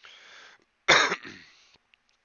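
A man takes a short breath in, then gives one sharp cough to clear his throat about a second in.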